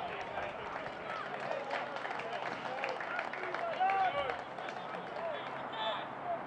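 Shouts and calls from players and spectators at a football pitch, several voices overlapping, with a few short knocks among them.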